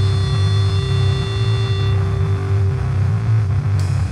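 Electric guitar and bass amplifiers holding a loud, sustained drone: a deep low rumble under several steady high tones, the high tones dying away about halfway through. A cymbal crash comes in near the end.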